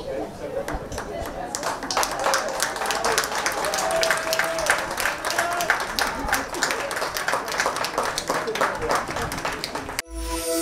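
Light applause from a small group of racecourse spectators, starting about a second and a half in, with voices talking under it.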